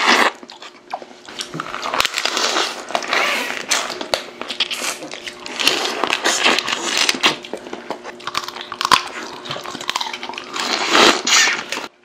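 Close, loud eating of steamed snow crab: biting and chewing the meat and tomalley straight from the shell, in a run of irregular wet bursts with sharp crunchy clicks from the shell.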